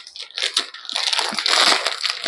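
Plastic Maggi instant-noodle packet crinkling as it is pulled and torn open by hand. The crackle starts faint and grows loud from about a second in.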